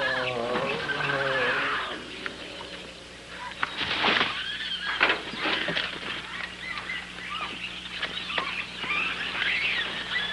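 Laughter trails off, then a sudden loud shriek comes about four seconds in, followed by scattered jungle animal and bird calls.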